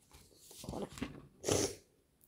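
Rustling and brushing as a book is handled close to the microphone, in a few short bursts, the loudest about one and a half seconds in.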